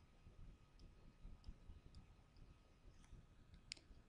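Near silence, broken by a handful of faint, sparse clicks of a pen stylus tapping on a tablet screen while writing by hand, the clearest one a little before the end.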